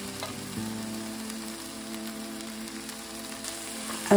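A skillet of tomatoes, kidney beans and mushrooms sizzling steadily as it cooks, over soft background music of held notes.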